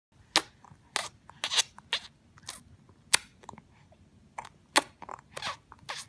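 A baby sucking and smacking its lips: about a dozen sharp smacks at irregular intervals, roughly two a second.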